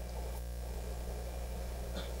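Steady low electrical mains hum from the hall's sound or recording system, with a faint click about half a second in.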